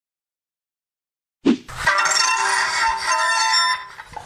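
Silence for about a second and a half, then violin music that begins with a sharp hit and stops abruptly just before the end.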